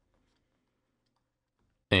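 Very faint clicks and scratches of a stylus writing on a drawing tablet, followed near the end by a voice starting to speak.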